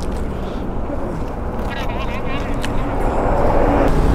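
Steady vehicle engine rumble and highway traffic noise, growing louder near the end.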